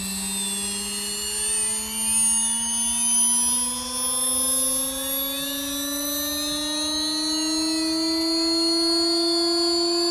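Losi Promoto MX RC motorcycle's flywheel spooling up: an electric whine whose pitch rises slowly and evenly, with a fainter high whine above it.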